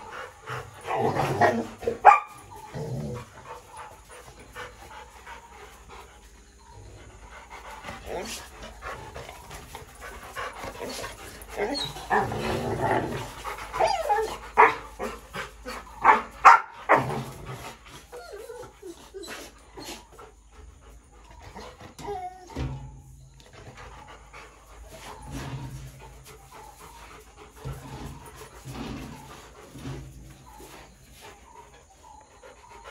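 Rottweilers panting, with louder bursts of dog noise and a few sharp knocks near the start and again around the middle.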